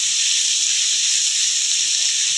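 Onions and garlic sizzling steadily as they sauté in hot oil in a frying pan.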